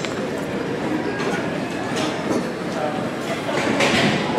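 Gym room noise with indistinct background voices and a couple of short sharp clicks, one about two seconds in and one near the end.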